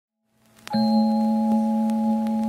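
Synthesized chime chord of an intro jingle: it starts suddenly after a brief silence and is then held steady as one ringing chord of several tones.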